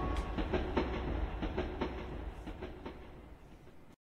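The backing track's closing fade-out: a rhythmic percussion pattern of regular hits that grows steadily quieter and then cuts off at the end.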